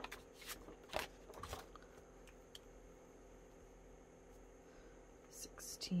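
Quiet paper handling: a few short rustles and light taps as a planner sheet is turned, then faint room tone, with more brief crisp rustles near the end.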